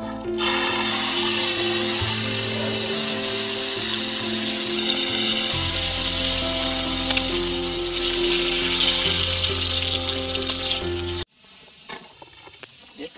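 Background music of held tones over a low bass, with ground red chilies sizzling in oil in a pan on a portable gas stove underneath. Both stop abruptly near the end.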